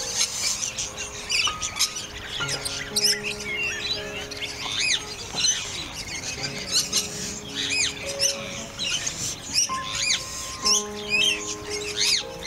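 Birds chirping and tweeting, many short rapid calls throughout, over background instrumental music with steady held notes.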